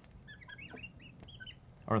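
Marker squeaking on a glass lightboard while writing a short phrase: a run of quick, high, chirp-like squeaks, one per stroke.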